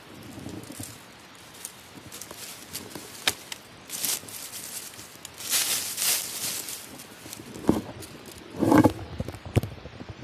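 Dry fallen beech leaves rustling and crackling as a hand works through the leaf litter, with a sharp click about three seconds in and louder swells of rustling through the middle. Near the end there is a short burst with a pitched, voice-like sound.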